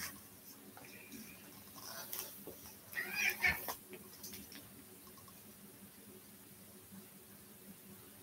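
A house cat meowing in short, high, wavering calls, a brief one about two seconds in and the loudest a second later, over a quiet room.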